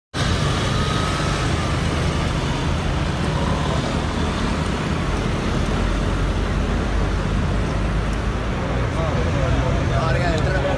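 Steady outdoor street noise: a continuous low traffic rumble with voices of people mixed in.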